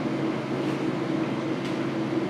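A steady background hum with a hiss and a few level tones, plus a couple of faint clicks.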